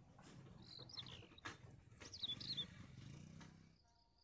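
Faint birds chirping: a few short, quick descending notes about a second in and another cluster past the two-second mark, over a low outdoor rumble that drops away just before the end.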